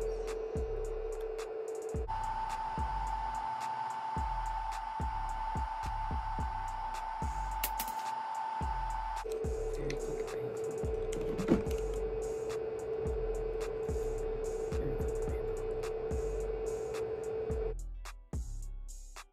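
Background music: a steady drum beat under a single held synth note that jumps up an octave about two seconds in and drops back down about nine seconds in, cutting off just before the end.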